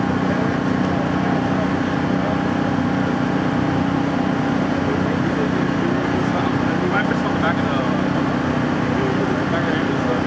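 Steady low engine drone from idling emergency vehicles, with indistinct voices in the background.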